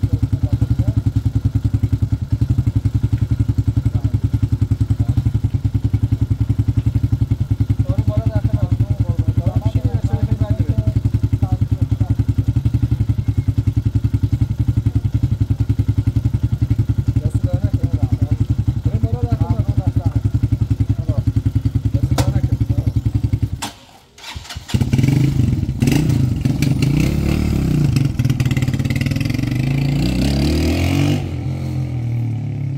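Small commuter motorcycle idling with a steady, rapid, even pulse. About three-quarters of the way through the sound drops out for a moment, then the engine comes back louder, revving up and down as the bike pulls away.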